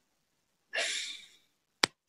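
A person's breathy sigh or exhale into the microphone, lasting under a second, followed near the end by a single sharp click.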